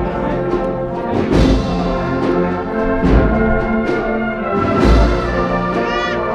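Agrupación musical (cornets, trumpets, trombones and drums) playing a Holy Week processional march, with sustained brass chords over a slow, deep drum beat that falls about every second and a half to two seconds.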